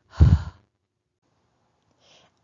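A single short, breathy "h" sound, the unvoiced phonics sound of the letter h, spoken as a puff of breath.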